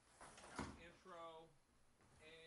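A faint, brief bit of speech: a word or two spoken over the session's audio link, its pitch falling away at the end.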